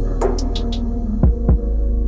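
Background library music: a sustained low drone with a few light, high percussion hits in the first second, then two deep thumps about a quarter second apart, each dropping in pitch, like a heartbeat.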